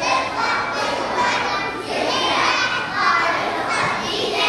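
A large group of young children singing together in unison, loosely and partly shouted.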